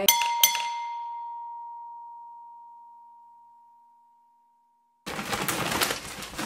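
A bright glass-like chime, struck twice in quick succession, then ringing out as one clear tone that slowly fades away. About five seconds in, rustling and knocking noises begin.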